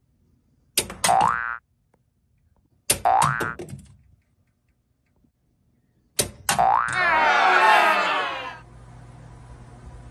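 Three cartoon-style "boing" sound effects, about a second and two seconds apart, each a click followed by a rising twang. The third is longer and wobbles for about two seconds. After it a low steady hum carries on.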